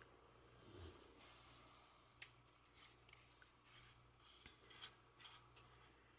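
Near silence: room tone with a few faint, short clicks and soft rustles of hands handling craft supplies on a table.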